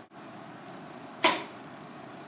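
A stretched rubber band released to launch a cup flyer of two taped-together cups: one short, sharp snap and swish about a second in, over faint room hiss.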